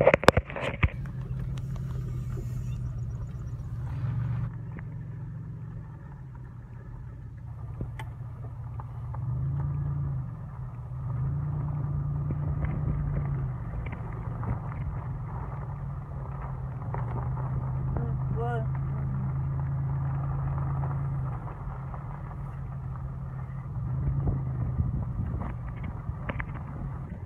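Low engine drone of a slowly moving truck heard from inside the cab. The drone swells and eases in stretches as it rolls along.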